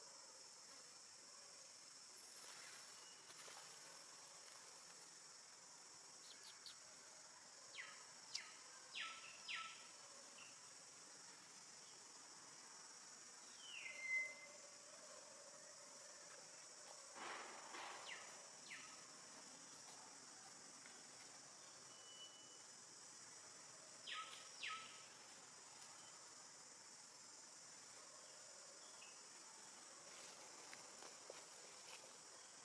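Faint, steady high-pitched drone of forest insects, with a few short chirps and clicks scattered through it.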